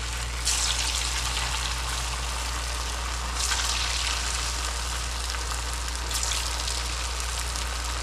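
Small stuffed pastries deep-frying in very hot fat in a small pan: a steady, crackling sizzle that swells about half a second in and again about three and a half seconds in.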